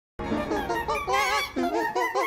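A cartoon character's voice run through heavy pitch-shift and distortion effects, its pitch warbling up and down. The sound cuts out briefly right at the start.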